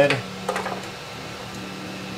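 A short click of hands handling the 3D printer's bottom cover, about half a second in, over a steady low hum.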